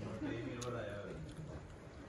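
Low men's voices talking in the background, fading after about a second, with one light click a little after the start.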